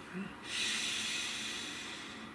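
A man taking a long, deep breath: an airy hiss that starts about half a second in and fades slowly over about two seconds.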